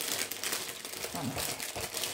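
Thin clear plastic bag crinkling continuously as it is handled and opened to slide out a piece of embroidery fabric.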